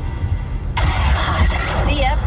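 FM radio station ID playing through a car stereo's speakers, with a steady low engine rumble in the cabin. About a third of the way in, a jingle comes in suddenly, and the announcer's voice begins near the end.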